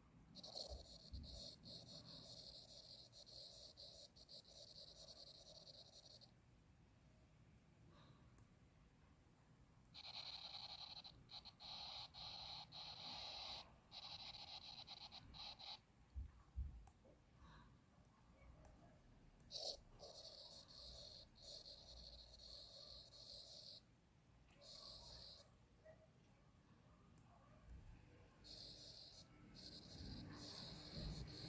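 Samsung Notes' drawing sound effects played from the Galaxy Tab S7+: a faint, soft scratching that runs in stretches of a few seconds while the S Pen makes strokes and stops between them. Its tone changes from one stretch to another as different pen and pencil tools are used.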